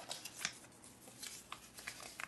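Faint rustling of paper and cardboard, with a few light ticks and a quick run of them near the end, as hands lift a paper documentation insert out of a small cardboard box.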